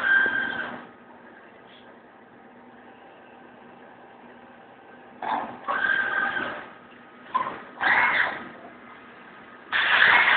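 Deckel Maho DMP 60S CNC mill cutting metal in short bursts with a high squeal: one burst at the start, a cluster from about halfway, and another near the end. A steady low machine hum continues between the cuts.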